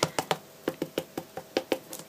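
Quick, uneven light taps, about seven a second, of a foam pad dabbed against a rubber stamp to load it with paint.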